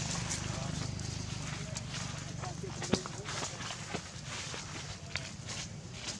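Macaques moving about in dry leaf litter: scattered rustles and clicks, with one sharp click about three seconds in, over a steady low hum.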